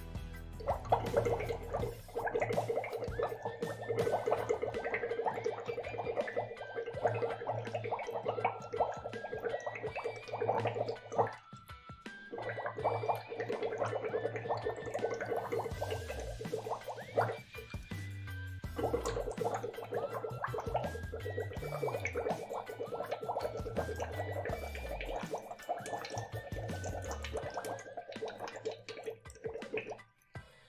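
Air blown through a drinking straw bubbling steadily into a small cup of water, pausing briefly twice, over background music with a bass line.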